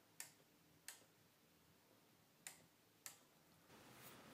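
Four faint, sharp clicks at uneven intervals as input bits are switched on a relay computer's ALU: the relays and input switches click over as each bit changes.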